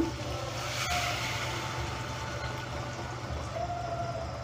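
Hot water being poured into a pan of fried chickpeas and mashed potato, a pouring rush that is strongest in the first couple of seconds and then dies down.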